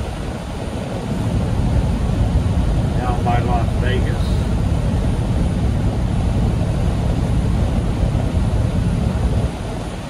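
Steady low drone of a semi truck's engine and road noise inside the cab while cruising at highway speed, a little louder from about a second in until just before the end.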